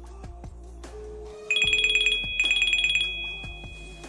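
Apple Watch Series 9 ringing for an incoming call with its ringtone sound switched on: two quick, high trilling rings just under a second apart, the second running on into a held tone.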